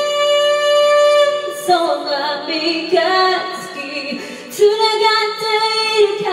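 A woman singing a slow song solo, holding one long note for about the first second and a half, then moving through shorter notes, and holding another long note near the end.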